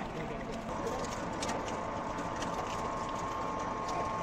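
Cold press oil expeller running steadily while pressing ajwain (carom seed). A steady high tone joins the machine noise less than a second in, with scattered light ticks over it.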